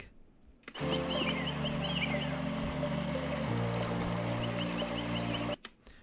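Background piano music playing under a nature recording of birds and running water: sustained piano chords that change about halfway through, over repeated high bird chirps and a steady wash of water. It starts about a second in and cuts off just before the end.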